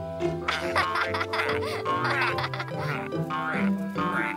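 Cartoon characters laughing and giggling over light background music.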